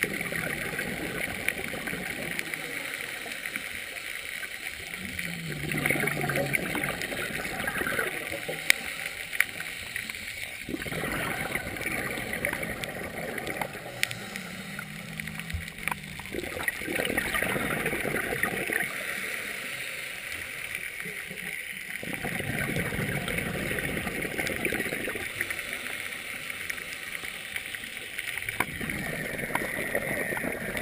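Scuba diver breathing through a regulator underwater: slow, regular cycles of inhaled hiss and longer bursts of exhaled bubbles, each phase lasting several seconds.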